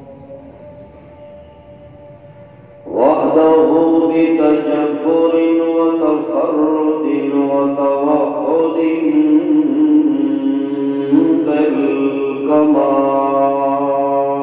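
A man's voice chanting the Arabic opening of a Friday sermon in long, drawn-out melodic notes. A held note fades over the first three seconds, then the chant comes back loud about three seconds in, stepping between sustained pitches with a short break near the end.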